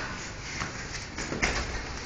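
Rustling and scuffling of two grapplers shifting on foam mats, with a soft thump about one and a half seconds in.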